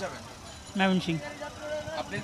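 A short spoken phrase about a second in, over the background noise of a crowded bus terminal: other voices talking and a steady vehicle noise.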